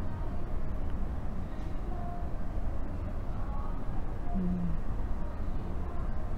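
Steady low rumble of background room noise, with a short low hum of a woman's voice about four and a half seconds in.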